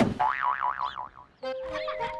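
Cartoon boing sound effect: a sharp hit followed by a wobbling, springy tone that dies away over about a second. Music comes back in with a held note at about a second and a half.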